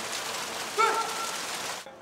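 Steady splashing hiss of the courtyard's memorial fountain, with one drawn-out call from a voice about a second in; the sound cuts off abruptly near the end.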